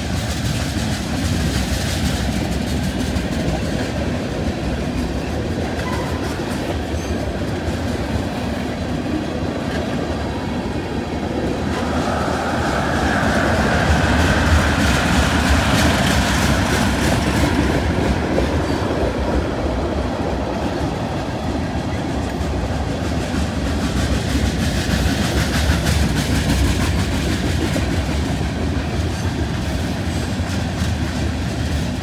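Freight train of tank cars rolling steadily past on the rails. About twelve seconds in a pickup truck drives by close in front, making the sound a little louder for several seconds.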